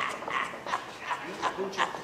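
A person's voice: short vocal sounds that are not clear words, with a few light clicks or knocks.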